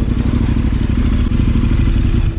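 KTM 1290 Super Adventure R's V-twin engine running at low road speed, a steady, loud low rumble.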